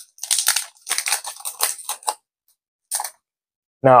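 Foil trading-card booster pack wrapper crinkling and tearing as it is opened: a quick run of crackly rustles for about two seconds, then one short rustle about three seconds in.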